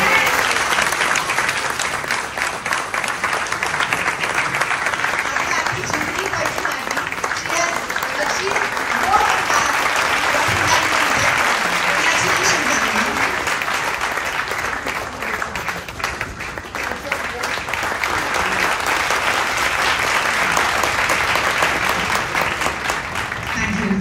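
Audience applauding: a long, steady round of clapping from many hands.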